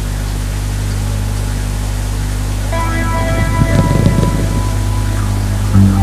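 A steady low hum and hiss from the stage sound system, then about three seconds in a live band starts its intro: an electric guitar plays sustained chords over low notes.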